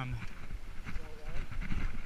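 Mountain bike rolling over a sandy dirt trail, with a string of short knocks and rattles from the bike over a steady rush of noise. A faint voice is heard briefly about a second in.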